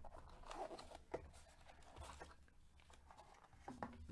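Faint rustling and crinkling of a trading-card box being opened and its black foil-wrapped pack handled. A few sharp clicks come through, the loudest about a second in.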